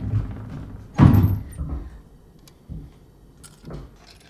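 A door shutting with a heavy thump about a second in, followed by a few faint knocks and rattles.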